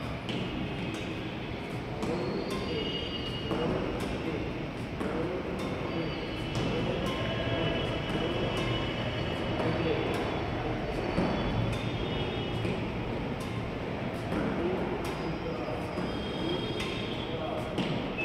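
Badminton racket strings striking feathered shuttlecocks in repeated light, sharp taps during net-shot practice, over voices talking in the hall and occasional short high squeaks.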